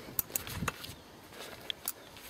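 Light handling noise from a bicycle hub motor being turned over in gloved hands: several short clicks and knocks in the first second and two more near the end.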